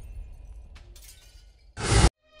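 Logo-intro sound effect: its high ringing tail fades away, with a faint tick a little under a second in. Near the end a short rush of noise swells up loudly and cuts off abruptly.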